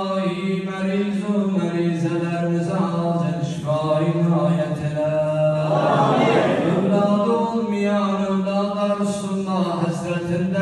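A man chanting a prayer of supplication into a hand-held microphone, amplified, in long held notes at a steady low pitch. About six seconds in, a brief rush of broader noise rises over the chant.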